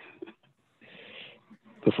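A woman's brief, breathy chuckle, faint and heard through a video-call microphone, in a pause in her own speech. A spoken word follows near the end.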